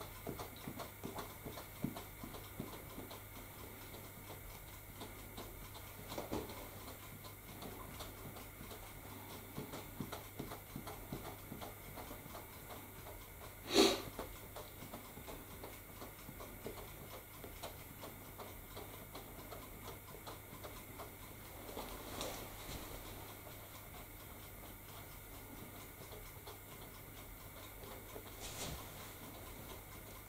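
Faint, irregular small taps and rustles from hands working a handheld grass applicator over the layout, with one louder short sound about 14 seconds in.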